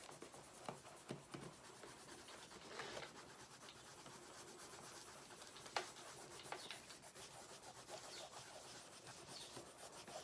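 Coloured pencils scratching faintly on sketchbook paper as a rainbow is shaded in, with a few light clicks.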